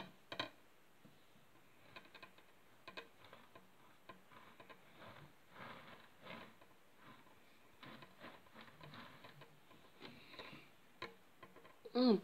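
Faint, irregular clicks and light rubbing as a black round display turntable is turned by hand with a figurine on it.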